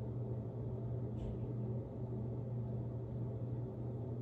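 A steady low background hum, with a faint short soft sound about a second in.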